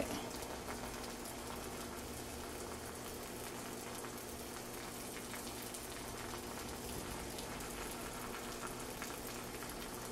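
A thin stream of hot water from a pour-over kettle trickling steadily onto wet coffee grounds in a paper filter, a faint even pattering during the bloom pour.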